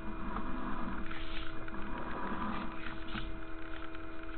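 Steady electrical hum from sewer inspection camera equipment, with faint irregular clicking and scraping as the push cable is slowly pulled back out of the line.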